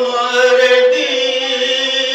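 A man singing a devotional poem in a chant-like recitation into a microphone, his voice swelling in just as it begins and holding long, ornamented notes, over a steady drone.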